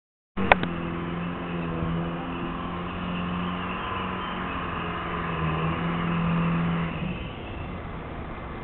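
A motor engine running steadily, a low even hum that dies away about seven seconds in, with one sharp click just after the sound begins.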